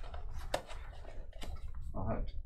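Soft rustling of a cloth drawstring bag as a hard plastic graded-card slab is slid out of it, with two light clicks, one about half a second in and one about a second and a half in.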